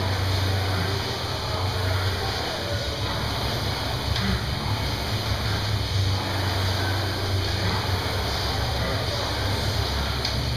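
Rowing machine's flywheel whirring under hard rowing, the whoosh swelling and fading with each pull stroke.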